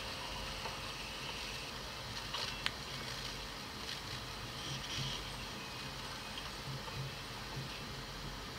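Faint, steady vehicle-cabin rumble from an old handheld recording, heard played back through a computer's speakers, with one sharp click about two and a half seconds in.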